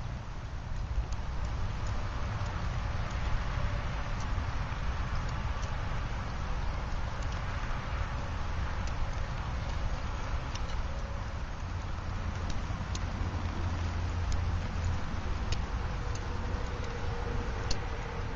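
Steady noise with a low rumble and scattered sharp ticks, from a tin-can wood-gas stove burning wood pellets in light rain.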